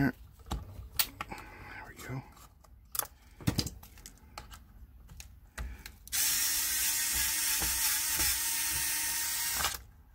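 SKIL cordless electric screwdriver running steadily for about three and a half seconds as it backs a pre-loosened screw out of the RC truck's chassis plate, after several seconds of scattered clicks and taps from handling the screw and tool.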